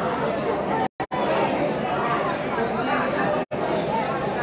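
Crowd chatter: many people talking at once in a steady hubbub of overlapping voices, with no single speaker standing out. The sound cuts out twice, briefly, about a second in and again near the end.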